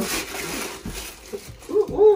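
Paper rustling and a cardboard shoe box being handled, a brief rustle at the start followed by soft scattered handling noises.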